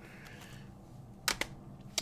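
Two short clicks in quick succession a little over a second in, and another near the end, from items being handled, such as a record or CD case being moved.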